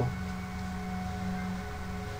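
Quiet background score of held, droning tones at several pitches. A low note fades out about one and a half seconds in as another tone comes in.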